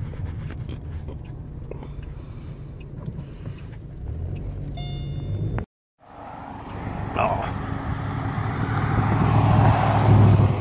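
Car engine and tyre noise heard from inside a moving car, a steady low rumble that cuts out briefly a little over halfway through. After the break the road noise swells as another vehicle passes close alongside, loudest at the end.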